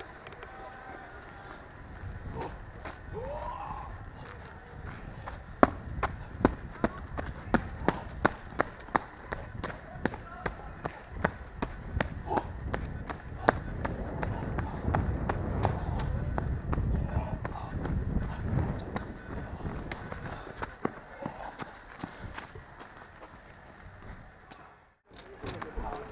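Footsteps of a person running, about two strides a second, from about five seconds in. They give way to a low rumble of movement against the body-worn camera.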